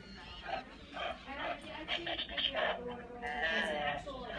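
Battery-powered walking Sven reindeer plush toy playing its recorded reindeer noises as it walks, with a longer, higher held call near the end.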